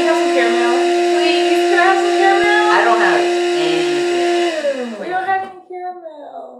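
Built-in grinder of a grind-and-brew coffee maker running loudly at a steady pitch as it grinds the coffee, then cutting out about four and a half seconds in and winding down. Laughter over it.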